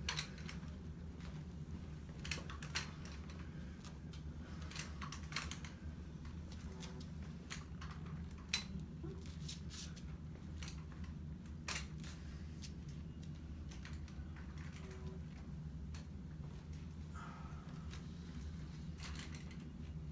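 Light, irregular clicks and taps of a walker being lifted and set down on the floor with each short step, over a steady low hum.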